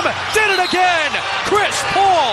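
A sports commentator's voice over the steady noise of an arena crowd, with a few short, sharp sounds from the court.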